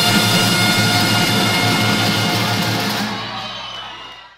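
Recorded brass band music: held notes over a steady drum beat, fading out near the end as the track closes.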